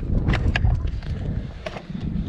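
Clicks and clunks of a Yamaha FJR1300 ES factory hard saddlebag's latch lever being pulled up and its lid coming open: a few sharp clicks in the first second and one more near the end.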